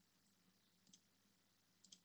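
Faint computer mouse clicks in near silence: one about a second in and a quick pair near the end, as faces are picked one at a time in a CAD program.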